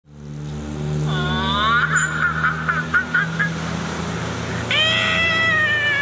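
An eerie high-pitched wailing sound effect over a low steady hum. It rises in a sweep, breaks into a rapid run of short high 'hi-hi-hi' notes about five a second, then about five seconds in turns into a long drawn-out wail that slowly sags in pitch.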